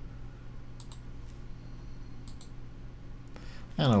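Computer mouse clicks, a few sharp clicks coming in pairs, as an image is chosen from a media library, over a steady low electrical hum.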